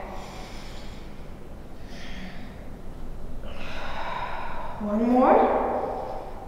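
A woman breathing through an exercise: breathy exhales about two and four seconds in, then a short voiced effort sound rising in pitch about five seconds in.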